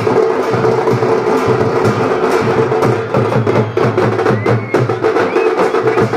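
Percussion music: fast, steady drumming with rapid sharp strokes over a held droning note, with no pause.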